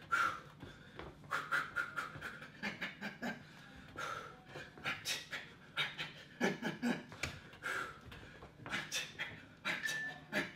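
A man breathing hard in short, rapid puffs during a high-intensity punching and shuffling exercise, out of breath from the exertion.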